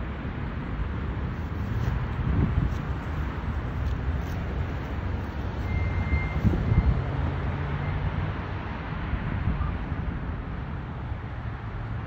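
Outdoor ambience: a low rumble of road traffic and wind on the microphone, swelling briefly about two and a half and six and a half seconds in.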